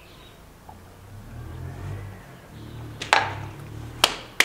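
A low rumble swells about a second in and runs on underneath. Near the end comes a single sharp hand clap, the loudest sound.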